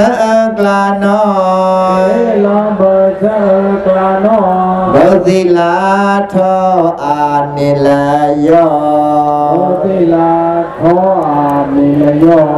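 A Karen Buddhist devotional chant sung by one voice in long, wavering held notes over a sustained low accompanying note, which drops in pitch about seven seconds in.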